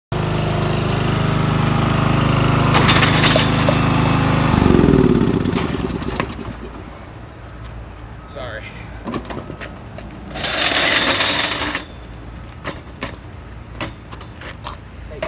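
Riding lawn mower engine running, then switched off about four and a half seconds in, its pitch falling as it winds down over about a second. Scattered knocks follow, with a short rush of noise near the end.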